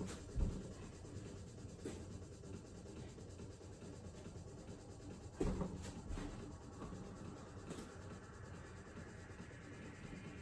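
Feet thudding and scuffing on a thin exercise mat over carpet as a person jumps the feet in and out from a plank. The loudest dull thumps come just after the start and about five and a half seconds in, with lighter scuffs between.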